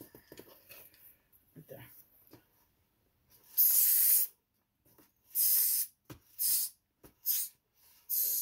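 Packing tape on a cardboard box being slit with a hook-shaped safety box cutter: four short scratchy strokes, the first and longest about three and a half seconds in, the rest shorter and about a second apart.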